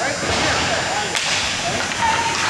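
Hockey stick slapping the puck on the ice: one sharp crack about a second in, over the scrape and hiss of skates on the rink ice as play breaks from a faceoff.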